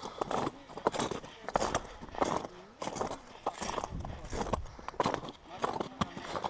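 Footsteps of hikers walking on glacier ice, a steady crunching step about every two-thirds of a second.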